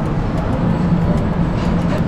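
Steady low background rumble with a constant hum in it.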